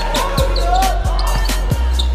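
Background music with a steady beat: a kick drum about every two-thirds of a second over a sustained bass line. Beneath it, basketball sneakers squeak on a hardwood court.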